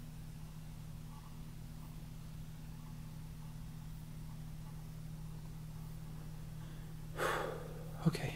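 A faint, steady low hum, with a sharp audible breath about seven seconds in.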